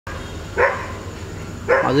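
A dog barks once, short and sharp, about half a second in, over steady background noise.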